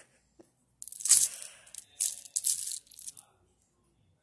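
Buttons clicking and rustling against each other as a hand sifts through a heap of them on knitted fabric, in two short bursts about a second apart.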